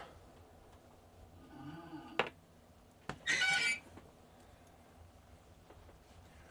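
Steel snare cable being drawn under pressure around the round bar of a hand-operated press arm to load the snare into a round loop. There is a faint squeak about one and a half seconds in and two sharp clicks, then a short, high-pitched squeal about three and a half seconds in.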